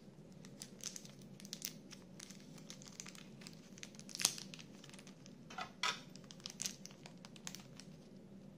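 Small clear plastic parts bag crinkling and crackling as it is handled and opened to take out screws, a run of irregular crackles and snaps with the sharpest one about four seconds in.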